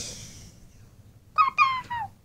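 A high-pitched, squeaky character voice, sped up well above normal speaking pitch. One call fades out at the start, and another begins a little over a second in, running in short joined syllables with a slight downward slide.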